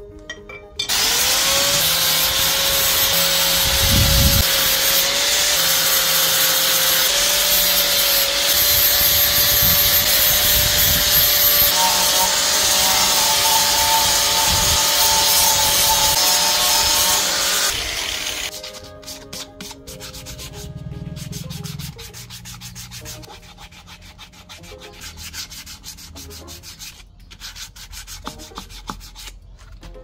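Electric angle grinder with a sanding pad switched on and sanding a bamboo cup, a loud steady motor whine with a sanding hiss. It stops after about seventeen seconds and gives way to quieter rubbing strokes of hand sanding.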